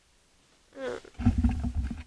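A brief vocal sound that slides in pitch, then loud, uneven low rumbling from hands gripping and moving the camera close to its microphone.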